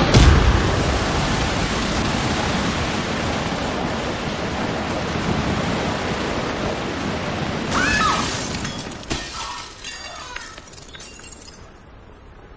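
Dramatic film sound effect: a sharp hit, then a loud, steady rushing noise like a blast of wind that lasts about nine seconds and cuts off suddenly, with a few short sounds near the end.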